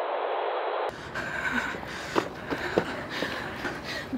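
Steady hiss of a telephone line, thin and narrow-band, that cuts off suddenly about a second in. It gives way to faint open-air background noise with a few soft clicks.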